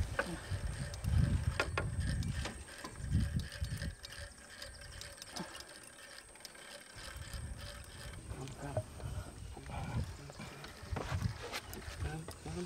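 Fishing reel clicking as line is wound in against a hooked Nile perch, with dull low rumbles coming and going.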